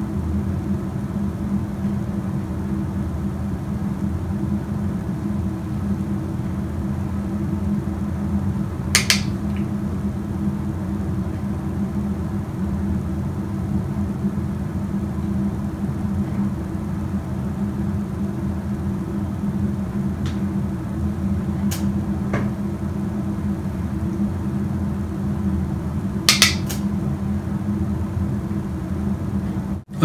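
A steady low hum runs throughout, with a few brief clicks: a double click about nine seconds in, one or two more a little after twenty seconds, and another double click near the end.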